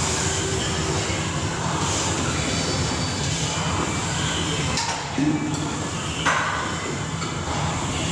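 Gym cable machine in use: a steady rumbling, whirring noise of cable running over the pulleys and the weight stack moving, with two sharp clanks about five and six seconds in.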